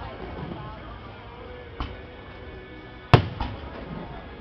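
Aerial firework shells bursting: a lighter bang a little under two seconds in, then a sharp, loud bang a little after three seconds, followed at once by a smaller crack.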